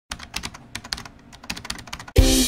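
Computer keyboard typing sound effect: a quick, uneven run of key clicks.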